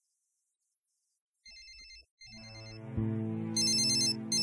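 Mobile phone ringtone: an electronic ring in short paired bursts, faint at first and louder near the end. Beneath it a low, tense film-score drone swells in, with a deep hit about three seconds in.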